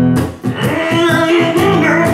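Electric guitar strumming a blues rhythm. About half a second in, a long held, wavering melody line comes in over the chords.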